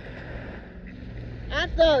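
Steady wind rumble on the phone's microphone over the wash of small waves on the beach, until a woman's voice comes in near the end.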